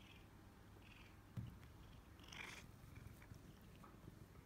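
An Oriental cat purring faintly, with a soft thump about a second and a half in.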